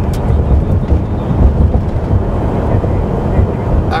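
Steady low rumble of engine and road noise inside a vehicle's cabin while it drives at highway speed.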